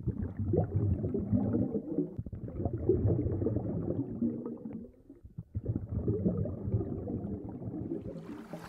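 Muffled underwater sound from a submerged camera in shallow seawater: a low, gurgling churn of moving water with legs wading through it. It drops away briefly about five seconds in.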